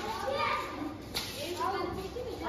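Background voices of children and adults talking and calling out, too indistinct for words, with one sharp click or knock a little past a second in.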